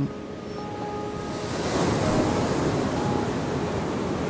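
Surf on a beach: a wave breaking and washing up the sand, swelling over about a second and then slowly easing off. Soft background music runs underneath.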